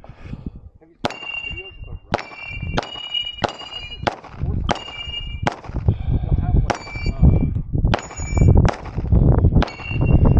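A rapid string of about a dozen pistol shots, starting about a second in. Most are answered by the clear ring of a steel target plate being hit.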